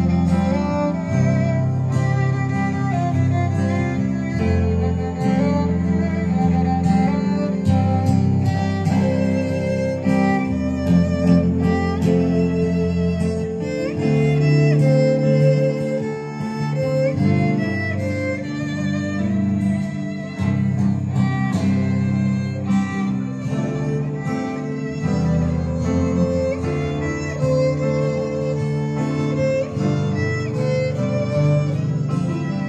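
Live instrumental string-and-piano ensemble playing continuously: grand piano, cello, violin and acoustic guitar, with the violin prominent.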